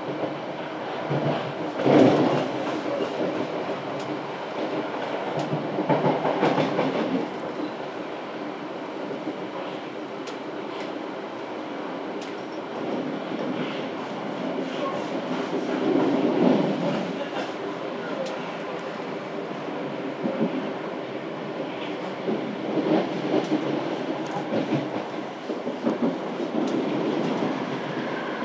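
Running noise heard inside a South West Trains electric train carriage in motion: a steady rumble of wheels on the track with scattered clicks as they pass over rail joints, swelling louder several times.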